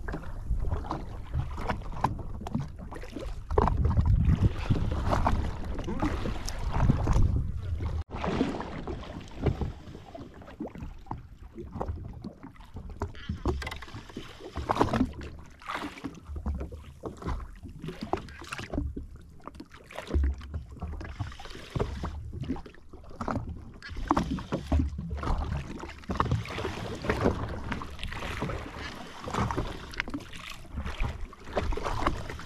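Wind buffeting the camera microphone in uneven low gusts, with waves lapping and slapping against the hull of a drifting jetski.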